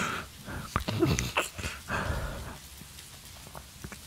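A man's breaths and breathy laughs close to the microphone, with a few faint mouth clicks. There are several short bursts in the first two seconds, then quieter breathing.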